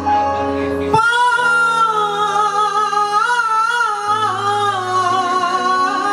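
A woman singing an Assamese Borgeet melody live with a band, in long held phrases with vibrato. A new phrase starts about a second in, over sustained low accompanying notes.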